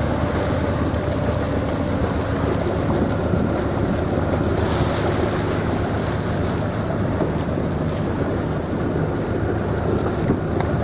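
A Southerly 95 sailboat's engine running steadily under way, mixed with wind on the microphone and the rush of water as the hull moves through a choppy sea.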